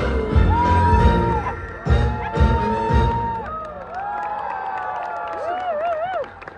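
A live band with a woman singing finishes a song: heavy beat hits and held sung notes stop about three seconds in. The crowd then cheers and whoops.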